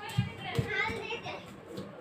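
Children's high-pitched voices in the background, with two low thumps near the start as cloth is handled on the sewing table.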